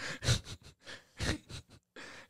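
Quiet, breathy laughter in several short bursts of breath, without words.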